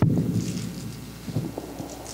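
A sharp knock picked up by a table microphone, followed by low rumbling handling noise that fades within about half a second, with faint paper rustling.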